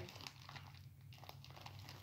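Faint, scattered crinkling and small crackles of wrapping and packing tape as a heavily taped gift package is picked at by hand.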